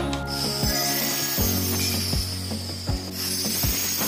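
Background music with a steady beat. Under it, a handheld circular saw cuts wood with a high rasping hiss that starts just after the beginning and breaks off briefly near the end.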